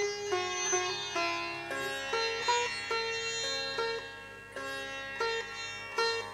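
Sitar playing a thumri-style ragamala based on raag Khamaj: a run of plucked notes, several bent in gliding pitch slides, over a steady tanpura drone.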